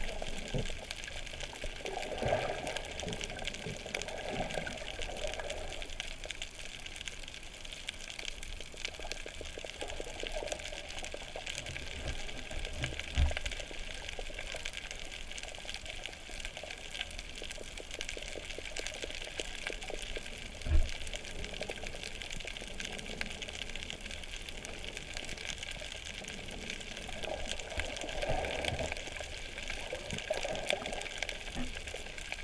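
Underwater ambience picked up by a camera submerged on a reef: a steady hiss with fine crackling, soft swells of water sound near the start and near the end, and two short low thumps, the second the louder, about two-fifths and two-thirds of the way through.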